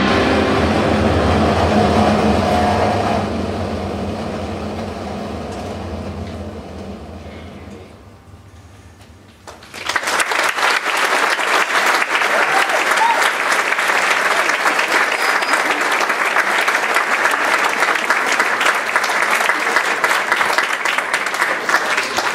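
A school concert band holds its final chord, which fades away over several seconds. About ten seconds in, the audience breaks into applause that goes on steadily.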